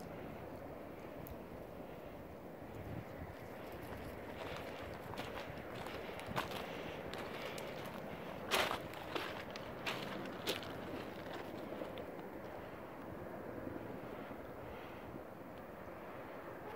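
Five tandem-rotor Chinook helicopters passing at a distance, their rotors a faint, steady low sound. A few short sharp clicks come about halfway through.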